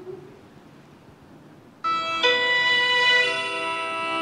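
Computer-generated music made by setting the beta globin gene's DNA sequence to a musical scale, played from a cell phone's speaker held up to a microphone. It starts suddenly almost two seconds in, as held notes that change about once a second.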